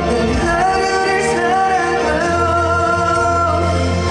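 A male vocalist singing live into a handheld microphone over backing music, holding one long note for about a second and a half in the second half.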